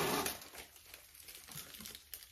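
Wrapped chocolate bars being handled, their wrappers crinkling. The crinkling is loudest at the start and dies down within about half a second to faint, scattered crackles.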